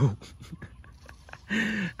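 A short animal call about a second and a half in, lasting under half a second, higher-pitched than the man's voice, after a few faint ticks.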